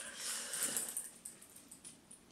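Faint breath-like noise close to the microphone, strongest in the first second and then fading away.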